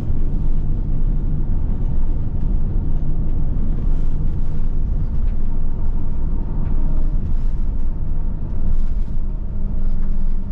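Steady low rumble of road and engine noise heard inside the cabin of a moving vehicle.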